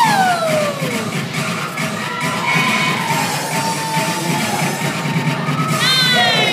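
Recorded dance-routine music played over speakers in a large hall, with a steady beat, a falling pitch sweep right at the start and another falling sweep near the end.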